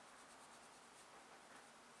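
Faint soft brushing of a water brush pen's bristles on paper, dabbing and blending felt-tip ink with water, over low room hiss.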